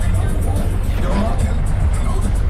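Steady low rumble of a minibus engine and road noise heard from inside the cabin, with indistinct voices and music in the background.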